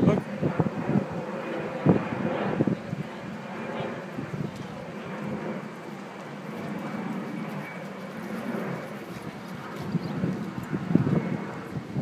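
A horse's hoofbeats, a scattering of irregular strikes clustered near the start and again near the end, with wind on the microphone and faint voices behind.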